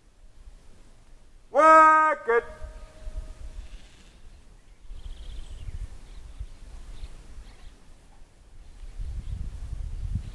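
A person's long, loud call held on one pitch for about half a second, with a short clipped second syllable right after it, about a second and a half in. Then only faint wind rumble.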